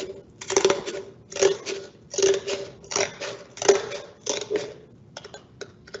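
Scissors cutting through a stiff paperboard chip can: about seven short crackling snips, roughly one every 0.7 seconds, then a few faint clicks near the end.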